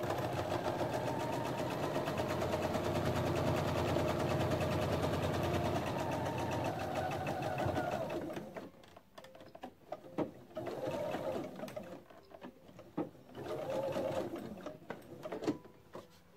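Pfaff Quilt Expression 4.0 electronic sewing machine stitching steadily for about eight seconds, then stopping. Two shorter bursts of stitching follow, each speeding up and slowing down, with a few light clicks between them.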